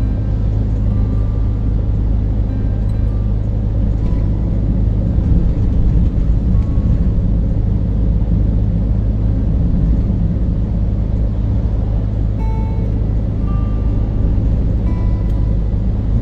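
Steady in-cab drone of a Scania lorry cruising on the open road: low engine hum with tyre and road noise, even and unbroken throughout.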